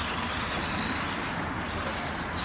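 Radio-controlled rally car driving over a dirt track, a steady noise of its motor and tyres.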